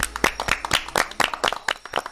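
A few people clapping by hand: separate, uneven claps rather than dense applause.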